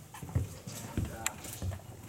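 Footsteps on gravelly ground, a few separate knocks, with indistinct voices talking in the background.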